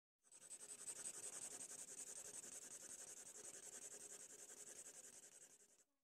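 Faint scratching of a drawing tool on paper: quick, even strokes several times a second, fading out near the end.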